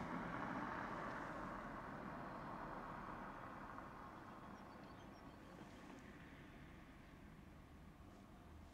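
A car driving past and away, its tyre and engine noise fading steadily, heard from inside a parked car.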